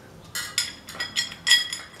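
Loose metal parts clinking as a rear drive sprocket and its mounting bolts are fitted onto a spoked bicycle wheel hub: six or seven light, ringing clinks, the sharpest about one and a half seconds in.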